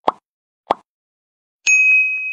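Two short pop sound effects about half a second apart, then a bright, steady chime that starts near the end. These are interface sounds for an animated like-and-follow end screen.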